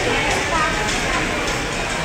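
Indistinct background voices chattering with music playing, a busy room's hubbub with no single clear voice.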